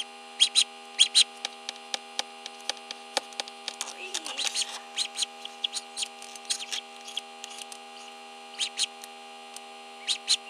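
A hatching duckling peeping from inside its pipped egg: many short, high-pitched peeps at an irregular pace, over a steady electrical hum.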